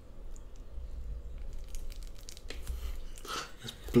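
A blunt knife blade scraping and sawing at the sealed edge of a cardboard box, with scattered crunching and crinkling, barely cutting through.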